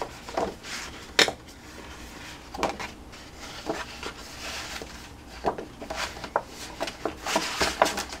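Cardstock being folded along its score lines and handled on a scoring board: scattered paper rustles and light knocks, the sharpest about a second in.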